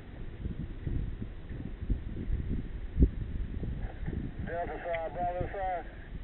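Rumble and irregular knocks on a helmet-mounted camera's microphone, with one sharp thump about three seconds in that is the loudest sound. A man's voice calls out near the end.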